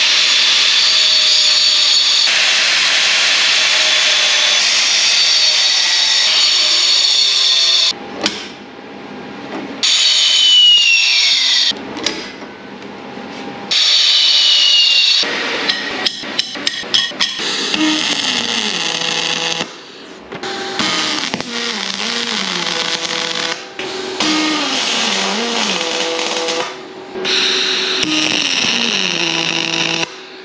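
An angle grinder runs against a clamped aluminium square tube in several cut-together bursts, the first held steady for about eight seconds. Near the middle come a short run of sharp metal clicks as the pieces are handled on the steel jig table.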